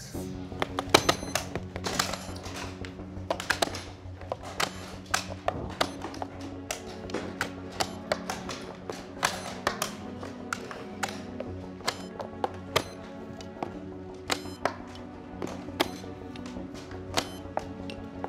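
Sustained background music under a busy, irregular clatter of sharp clicks, several a second: chess pieces being set down and chess clocks being pressed across many boards as tournament games begin.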